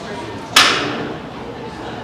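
A single sharp bang about half a second in, with a short echoing tail, over the murmur of people talking.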